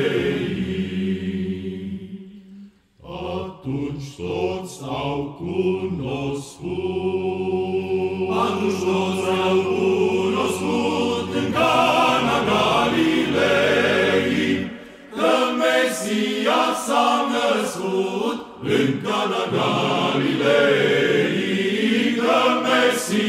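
Orthodox men's choir singing a Romanian Christmas carol a cappella in harmony. A held chord fades out about two seconds in, and after a brief break the singing starts again about three seconds in, with a low note held steady under the other voices.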